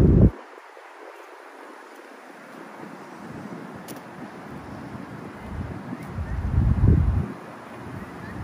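Wind buffeting the microphone in low gusts: a strong gust at the very start that cuts off suddenly and another about seven seconds in, over faint outdoor background noise.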